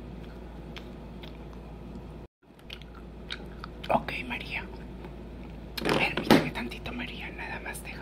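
Close mouth and lip sounds with soft whispering, mixed with a few sharper clicks and rustles. Around six seconds in there are louder bursts. The sound cuts out completely for a moment a little over two seconds in.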